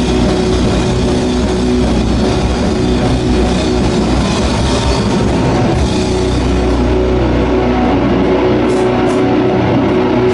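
Live heavy metal band playing: electric guitars and drum kit in a loud, dense, unbroken wall of sound.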